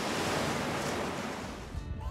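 Ocean surf breaking and washing ashore in a steady rush that fades out near the end as music comes in.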